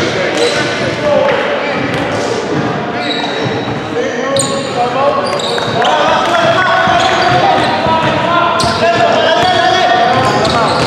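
A basketball bouncing on a hardwood gym floor, with sneakers squeaking in short high chirps from about four seconds in, as players run the court. Players' voices carry through the echoing hall.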